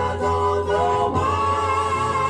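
A 45 rpm soul single playing on a turntable: voices singing, with a long wavering note held from about a second in.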